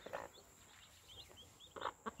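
Day-old chicks peeping faintly: a string of short, high peeps.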